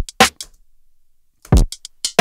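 Hip-hop drum loop playing back: a deep kick and a snare, then a gap of about a second, then the kick and hits come back in. It is played through Ableton Live's Re-Pitch warp mode at its original tempo.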